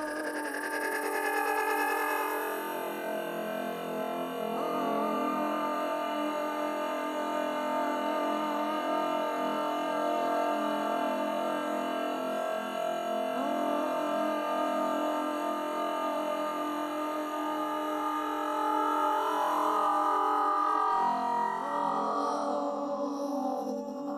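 Dense drone of many layered, held voice-like tones with a few slow pitch glides, electronically processed: an experimental improvisation of a live voice and a machine-generated voice.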